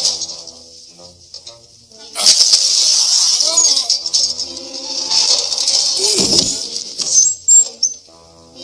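Movie soundtrack: over quiet background music, a loud rushing noise of snow sliding off a roof starts about two seconds in and runs for over five seconds, with a man's cries inside it, then cuts off just before the end.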